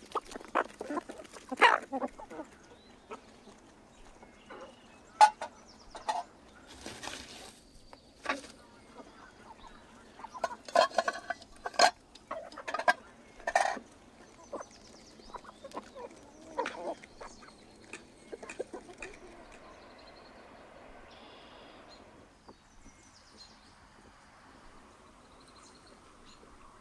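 Hens clucking and pecking at scattered wheat grain: a run of short, sharp sounds that settles into a quiet, steady background for the last several seconds.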